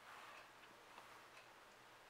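Near silence: a makeup brush working eyeshadow into the inner corner of the eye, heard only as a faint brushing at first and a few soft ticks.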